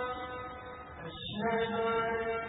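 A man's voice chanting in long held notes, with a short break for breath just over a second in.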